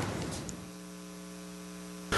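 Steady electrical mains hum in the meeting's sound system, a low buzz with evenly spaced overtones, left audible once the room sound dies away in the first half second.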